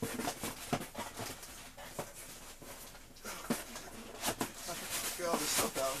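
Cardboard shipping box being opened and handled: rustling and scraping of cardboard flaps with many quick knocks and crinkles.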